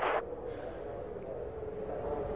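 Steady hum of idling vehicles, with a faint held tone running through it.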